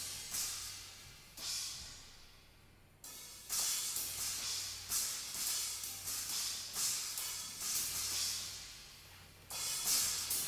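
Drum kit solo dominated by cymbals and hi-hats on a Ludwig kit: a couple of cymbal strikes left to ring out, then a quicker run of strokes, ringing down, and a fresh crash near the end.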